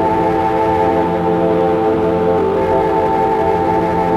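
Ambient drone in A minor built from keyboard, synthesizer and cassette tape loops, taken straight from the mixer's outputs: a dense stack of sustained pitches holding steady, wavering slightly around the middle.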